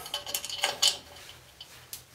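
A drum brake shoe hold-down pin being worked through the steel backing plate, with small metal parts clinking. There is a quick run of light metallic taps and clicks in the first second, then a single click near the end.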